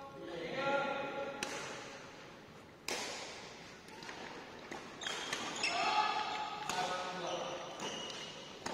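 Badminton rackets striking a shuttlecock in a rally, sharp cracks about every second and a half that ring on in a reverberant hall, with players' voices calling out between the shots.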